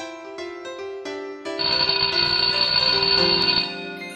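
Light keyboard background music. About a second and a half in, a louder, bright bell-like ringing joins it for about two seconds, then stops.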